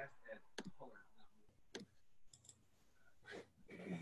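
Faint, scattered clicks from someone working a computer, about five of them spread over a few seconds, with faint voice sounds near the start and near the end.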